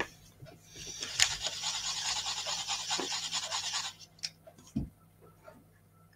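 Wooden cocktail stick stirring paint in a small foil dish: rapid scratchy scraping for about three seconds, then a few light taps and a knock.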